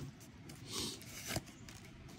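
Pokémon trading cards handled in the hands: a soft sliding rustle a little under a second in and a light tick a moment later.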